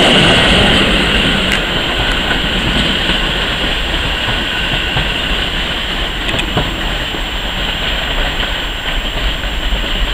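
Passenger coaches running past on the track, the wheel-on-rail noise easing off over the first couple of seconds as the train draws away. A few sharp clicks of wheels over rail joints and points come through.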